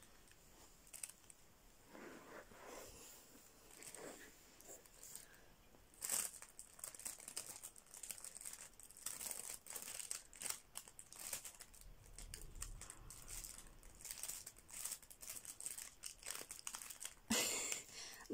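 Crinkly nylon cat play tunnel rustling and crackling in short bursts as a kitten moves about inside it. Faint and sparse at first, busier from about a third of the way in, with a louder crinkle just before the end.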